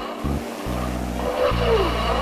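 Cartoon sound effects of toy radio-controlled model planes: a buzzing motor that comes and goes, and a falling whistle near the end as a plane dives towards the ground, over background music.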